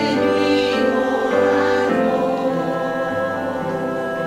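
A small women's choir singing together in held chords, the notes moving every second or so.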